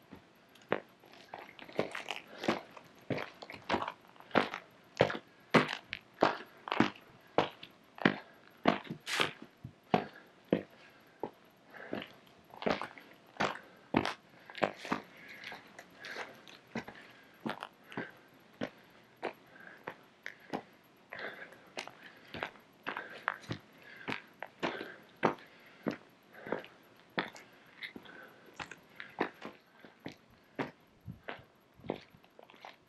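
A hiker's footsteps crunching on a stony, gravelly trail at a steady walking pace, about two steps a second.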